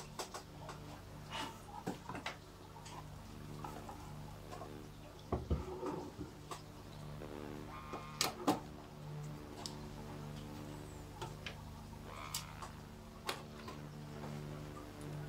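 Scattered clicks and light knocks as a computer power supply's metal case is handled on a wooden desk and a screwdriver works at its fan-grille screws. The loudest clicks come in a pair a little past halfway. Soft background music plays underneath.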